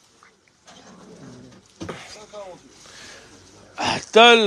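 Faint, indistinct talking in the background, with a short hiss-like burst of noise near the end.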